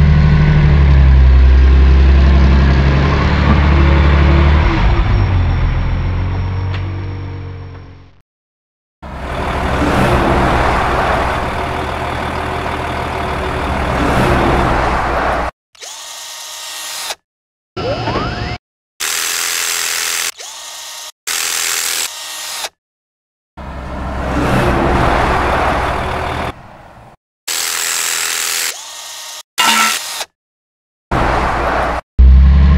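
Sound effects of a heavy vehicle's engine rumbling low and steady, fading out about eight seconds in. A stretch of rougher machinery noise follows, then a run of short mechanical clips cut together with abrupt silent breaks between them.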